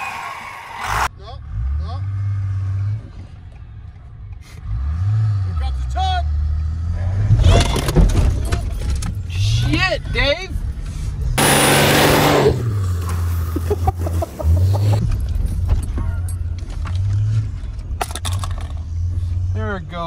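A vehicle engine running and revving up and down in steps, heard inside a pickup's cab during a snow recovery tow on a rope, with voices exclaiming over it. A loud rushing noise comes in about eleven and a half seconds in and lasts about a second.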